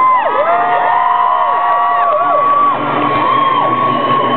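Concert audience cheering and whooping: many overlapping, drawn-out shouts that rise and fall in pitch.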